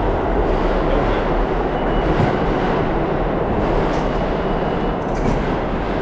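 Subway train running through the station: a loud, steady rumble with a faint high squeal in the middle.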